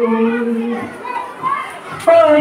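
A woman's voice over a microphone holds one steady note for just under a second, then gives way to quieter children's voices in the background.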